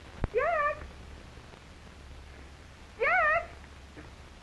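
A cat meowing twice, about three seconds apart. Each call is short, rising and then wavering. A sharp click comes just before the first meow, over a steady low hum.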